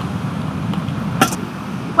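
Wind rumbling on the microphone, steady and low, with one sharp click a little past halfway.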